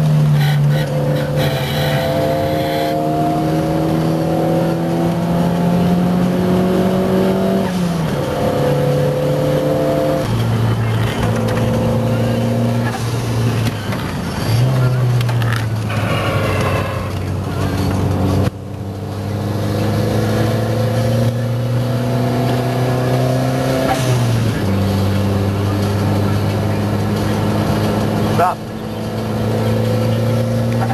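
A Cosworth-engined car driven hard on a race track. The engine's pitch climbs steadily through each gear and drops sharply at each upshift, about five times, with one quick rise in pitch about halfway through.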